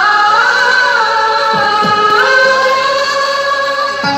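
A song with a woman singing long, ornamented held notes over music, with a couple of low drum strokes about one and a half seconds in. The singing gives way to the instrumental music at the very end.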